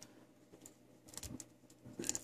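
Faint, scattered small clicks of a plastic action figure's joints and limbs being moved by hand.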